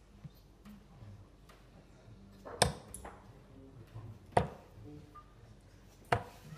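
Darts striking a Winmau Blade 4 bristle dartboard: two sharp thuds about two seconds apart over faint pub room noise.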